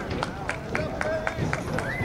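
Distant shouting and calling voices of people on a rugby field, with a long high-pitched call near the end, over a scatter of sharp, irregular clicks.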